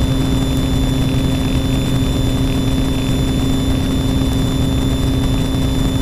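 Piper Saratoga's six-cylinder piston engine and propeller running steadily at takeoff power during the takeoff roll, heard from inside the cabin. A thin steady high whine of intercom interference sits over it.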